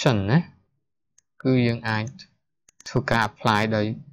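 A man speaking in Khmer in short phrases separated by brief pauses, with a few short clicks shortly before the last phrase.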